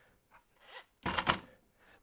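Bessey K-body parallel clamps being handled and set down onto a stack of other clamps: a couple of faint knocks, then a short clatter of plastic jaws and steel bars about a second in.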